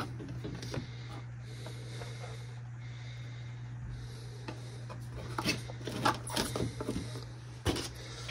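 Plastic supplement tubs, lids and a measuring scoop being handled, giving a few light clicks and knocks in the second half over a steady low hum.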